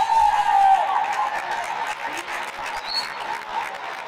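A voice holds a long shout for the first second, then an audience claps and cheers, and the applause slowly dies down.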